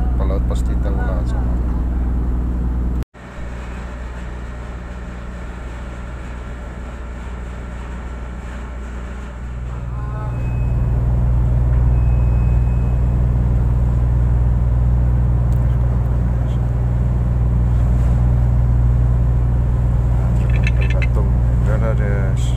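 Steady low drone of a ship's machinery. It breaks off suddenly about three seconds in, returns quieter, and grows louder again about ten seconds in.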